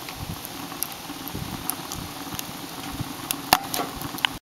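Wood fire burning in a stove's fire chamber: a steady hiss with scattered sharp crackles and pops, the loudest crack about three and a half seconds in.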